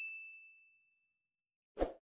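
Notification-bell 'ding' sound effect of an animated subscribe button, the bell icon being clicked: one high chime fading away over the first second. A short pop follows near the end.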